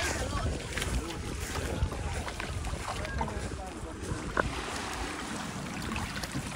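Wind buffeting the microphone over small waves lapping in the shallows, with faint voices in the background and one sharp click a little past four seconds in.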